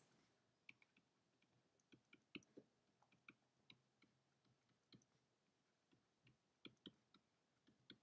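Near silence with a dozen or so faint, irregular clicks: a stylus tapping on a tablet screen during handwriting.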